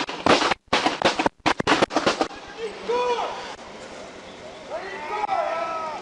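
A rapid volley of gunshots, a dozen or so in about two seconds, with shots overlapping from more than one gun. Shouting voices follow.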